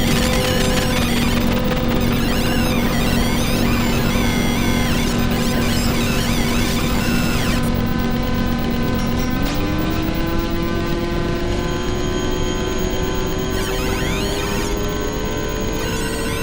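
Live improvised electronic noise music from modular synthesizers: a dense, noisy texture of warbling high tones over a steady low drone. About nine seconds in, the drone starts a slow upward glide in pitch while the high warbling thins out.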